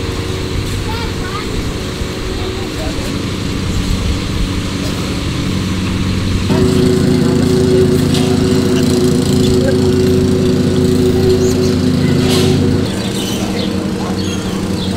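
A motor running with a steady hum of several tones. About six and a half seconds in it gets louder and fuller, then drops back near the end.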